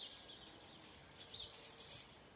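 Quiet outdoor ambience with a small bird chirping twice, at the start and about one and a half seconds in, and a few faint light ticks near the end.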